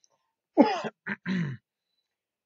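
A man clearing his throat in three short goes, the first one loudest.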